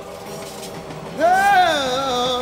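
Train running on the rails. About a second in, a loud wailing tone rises and falls over it and keeps wavering.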